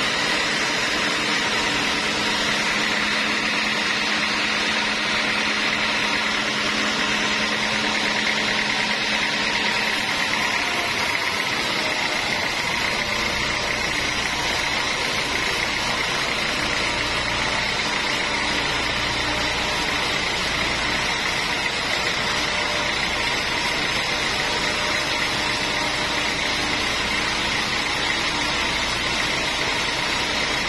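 Band sawmill running steadily, its blade cutting lengthwise through a large log, with a steady high whine over the noise. A deeper rumble joins about a third of the way in.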